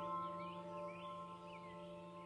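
Soft ambient meditation music: several held ringing tones that slowly fade, with faint bird chirps behind them.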